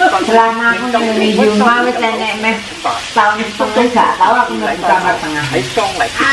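Voices talking throughout, the loudest sound, over food sizzling in a grill pan on a tabletop stove as it is stirred with chopsticks.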